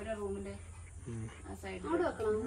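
People talking: voices in conversation, with a steady low hum underneath.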